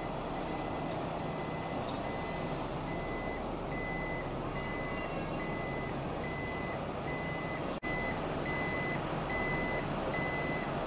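An electronic warning beeper sounds steadily, about two beeps a second, over the steady drone of fire engines' engines running. The beeps become louder about eight seconds in.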